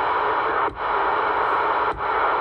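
Uniden Grant XL CB radio's speaker giving steady receiver static on channels with no signal, in AM mode. The hiss drops out briefly twice as the channel selector is stepped.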